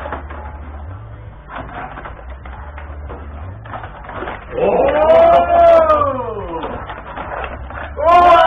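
Light clicking and rattling of table hockey rods and puck, then about four and a half seconds in a man lets out a long drawn-out cry, rising and then falling in pitch over about two seconds, in reaction to play at the table.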